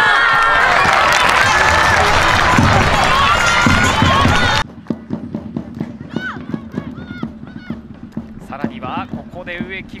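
Loud cheering and shouting as a goal goes in, cut off abruptly about four and a half seconds in. Then, much quieter, pitch-side sound of a women's football match: players calling out to each other and the ball being kicked.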